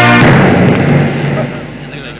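Film soundtrack sting: a held music chord cuts off with a single loud boom-like hit just after the start, which dies away over about a second.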